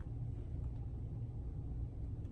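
Steady low background hum of room noise, with no distinct event standing out.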